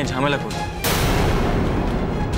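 A dramatic sound-effect hit over background music: a sudden loud crash-like burst about a second in that fades away over the next second.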